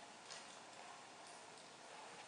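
Near silence with a few faint ticks of footsteps on a concrete floor, the clearest about a third of a second in.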